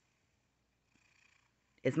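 Near silence with a faint hiss, then a person's voice starts speaking near the end.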